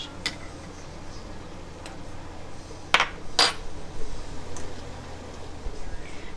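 Metal spoon clinking against the pot while a little excess tomato juice is spooned out of a filled jar back into the pot: a few short clinks, the two loudest close together about three seconds in.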